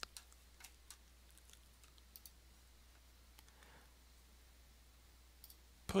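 A few faint, scattered clicks of a computer mouse and keyboard as text is copied and windows are switched, over a low steady hum.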